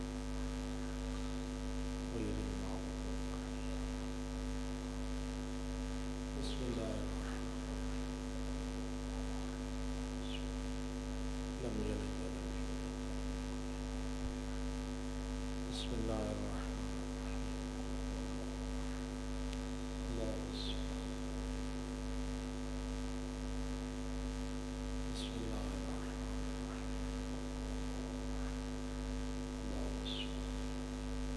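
Steady electrical mains hum from the microphone and sound-system chain. Faint brief sounds recur every four or five seconds.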